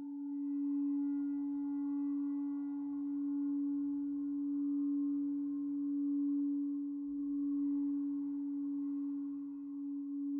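Drone from the Empress ZOIA Euroburo's Feedbacker patch, a reverb fed back into itself through EQ filters. One steady low tone with fainter higher tones drifting above it, swelling and ebbing slowly in level.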